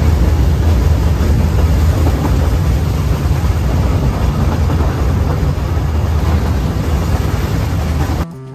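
Narrow-gauge train running, heard from on board: a loud, steady low rumble with a rushing noise over it.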